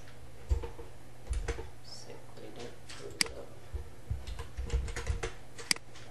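Irregular computer keyboard and mouse clicks, a dozen or so scattered taps with a few sharper clicks, over a steady low hum.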